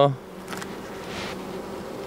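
Honeybee colony buzzing steadily from an opened hive as its frames are being handled.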